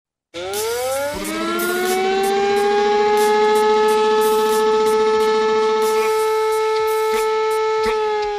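Intro sound effect for an animated title sequence: a loud sustained tone that rises in pitch over its first second, then holds steady for several seconds, with sharp hits scattered over it.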